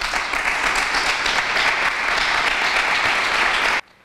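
Small seated audience applauding, steady dense clapping that cuts off suddenly near the end.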